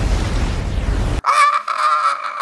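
A deep, noisy rumble from a disaster-film giant wave cuts off abruptly about a second in. A man's loud, held scream follows.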